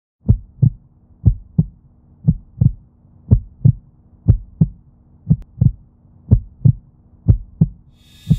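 Heartbeat sound effect: paired low thumps, lub-dub, about once a second, over a faint steady hum.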